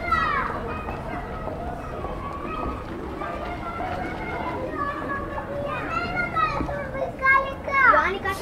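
People talking with children's voices among them, not close enough to make out words. Louder, high-pitched children's calls come about six seconds in and again near the end.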